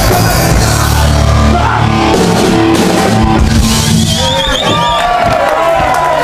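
Live punk rock band playing loud with distorted guitars, bass and drums. The full band sound drops away about three to four seconds in, and shouting and yelling voices follow.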